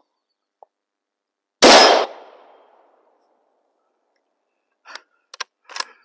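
A single shot from a Savage 110 bolt-action rifle in .270 Winchester: one sharp crack about a second and a half in, with an echo that dies away over about a second. A few short clicks follow near the end.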